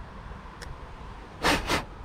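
Two short puffs of breath close to the microphone, one right after the other, near the end of a stretch of low background hiss.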